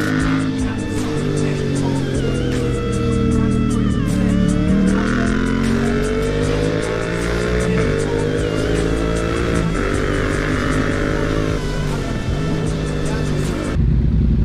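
Yamaha MT-07's parallel-twin engine under way, its revs rising and falling with the throttle. The pitch dips a few seconds in and then climbs again.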